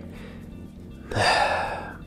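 A man sighs heavily about a second in, a long breathy exhale that fades away, in dismay at the number of stickers. Quiet background music runs underneath.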